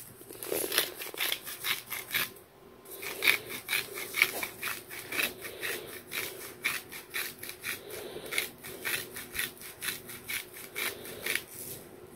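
Hand-twisted salt grinder grinding salt: a quick, steady run of rasping strokes with a brief pause about two and a half seconds in.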